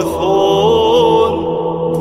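Orthodox liturgical chant: a voice sings a wavering, melismatic line over a steady held low drone. The melody pauses briefly near the end while the drone continues.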